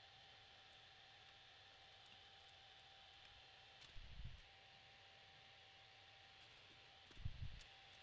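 Near silence: faint room tone, with two soft low bumps, one about four seconds in and one near the end.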